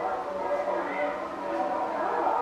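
Several people's voices overlapping with no single clear speaker, over a steady low hum.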